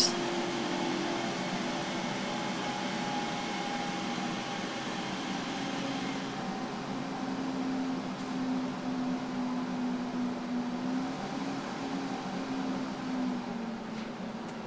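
Desktop PC cooling fans running at start-up, a steady whir with a low hum whose pitch drops a few seconds in. The fans are turned up high and a little loud to keep the CPU cool until a new CPU fan is fitted.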